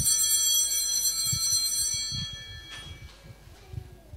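Altar bells rung once at the Mass before communion: a bright cluster of high ringing tones that starts suddenly and fades away over about three seconds.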